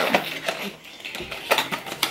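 Handling noise from a cardboard cosmetics box and its plastic packaging as it is opened: short clicks and rustles near the start and again about a second and a half in.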